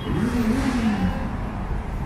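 Street traffic: a vehicle engine revs up and drops back over about a second, over a steady low rumble of traffic.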